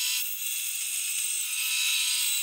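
Bandsaw running and cutting into a wooden guitar neck blank to remove the bottom piece of the neck tenon: a steady, high-pitched whine and hiss.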